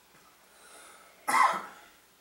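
A woman coughs once, a single short cough a little over a second in.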